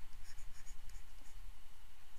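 Stylus scratching and tapping on a pen tablet as letters are written by hand, with small quick ticks over a faint low hum.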